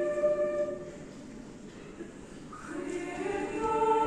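A choir singing a sacred choral piece in a concert hall. A held chord breaks off just under a second in and leaves a short pause with the hall's reverberation. The voices re-enter about two and a half seconds in, swelling into a new sustained chord.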